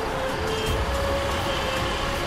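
Steady rumble of road vehicles, a scooter and a van idling or moving slowly, under dramatic background music with sustained held notes.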